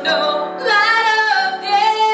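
Women singing a slow gospel song, holding long notes with a wavering vibrato, with a short break between phrases about half a second in.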